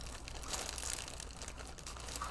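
Plastic packaging crinkling softly as it is handled, a little louder in the first second.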